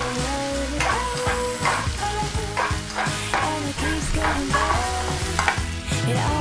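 Chopped onions with cumin seeds and dal sizzling in a frying pan as a spoon stirs them, with repeated scraping strokes about every half second, over background music.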